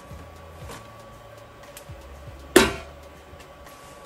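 Tissue paper and a metal scoop being handled, with one sharp sudden crackle about two and a half seconds in, over a faint steady hum.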